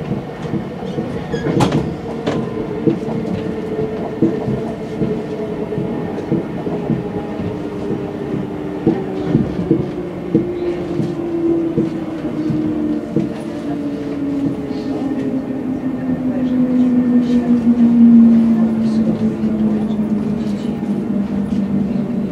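RER A MI84 electric train heard from inside the carriage, its traction whine falling steadily in pitch as the train slows, loudest near the end. Wheel and rail noise runs underneath with scattered clicks from the track.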